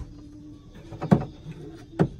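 Handling knocks as a collapsible silicone sink is set into a fold-down plywood tray, with one sharp knock about a second in the loudest and another at the very end.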